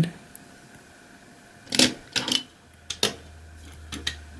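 Die-cast metal toy fire trucks being handled and set down on a wooden tabletop: a few light clicks and knocks, the sharpest about three seconds in.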